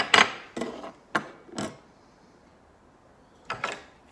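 Plastic roller blind parts handled on a hard tabletop: a few short clacks as pieces are set down and picked up in the first two seconds, then a brief rattling scrape near the end as the blind mechanism is worked free of the aluminium tube.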